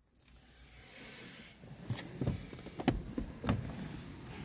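A 2021 Jeep Compass Sport's door being opened from inside: the quiet cabin gives way to a steady outdoor hiss, then several knocks and thumps, the loudest about three seconds in, as someone climbs out.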